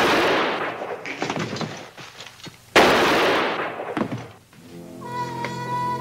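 Two handgun shots about three seconds apart, each starting suddenly and fading out over about a second; the first lands right at the start. Music with held string notes comes in near the end.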